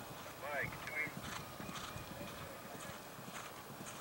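Hoofbeats of a horse galloping on grass turf, a run of soft thuds, with a brief pitched call about half a second in.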